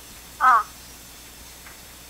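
A person's brief high-pitched vocal sound about half a second in, falling in pitch, over a low steady background.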